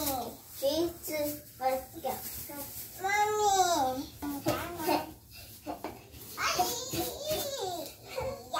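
Young children's high-pitched voices: babbling and chatter with a long drawn-out call about three seconds in.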